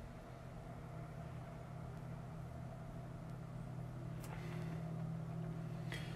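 A low steady hum that slowly grows louder.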